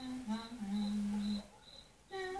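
Film soundtrack through a TV's speakers: a voice hums a slow tune, stepping down in pitch and holding a low note until about a second and a half in. Evenly spaced cricket chirps, about two or three a second, run underneath.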